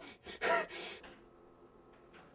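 A person's sharp gasp and short, falling vocal cry about half a second in, then near-quiet room tone.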